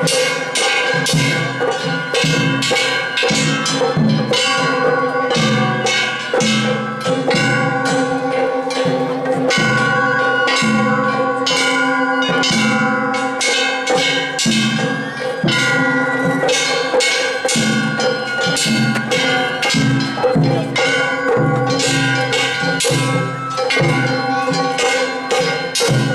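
Festival hayashi band: large brass hand gongs (kane) struck in a fast, even beat that rings without a break, over the hits of taiko drums.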